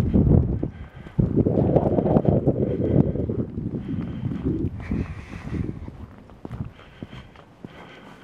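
Wind buffeting the microphone in gusts, heaviest in the first few seconds and easing off toward the end, with footsteps on paving stones underneath.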